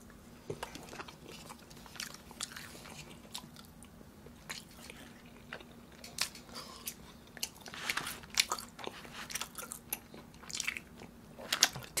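A person chewing grilled beef with the mouth close to the microphone: soft wet smacks and clicks, busiest about six to eight seconds in and again near the end, over a faint steady hum.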